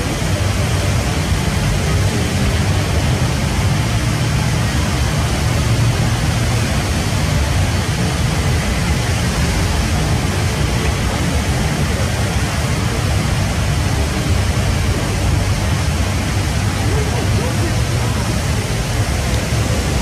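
Indoor waterfall, the Rain Vortex, falling into its basin: a loud, steady rush of water with a low rumble underneath.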